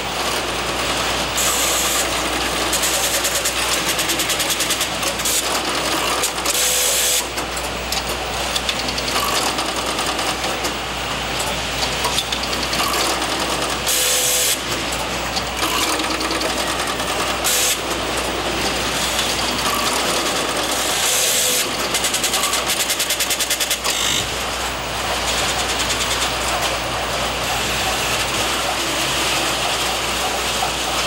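Electromechanical telephone-exchange switching equipment working: rotary selector switches and relays clattering and ratcheting in rapid runs of even clicks, over a steady low hum.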